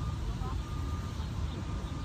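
A steady low outdoor rumble, with faint voices in the background.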